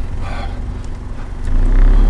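Car engine idling, then accelerating as the car pulls forward about one and a half seconds in, the low rumble growing much louder.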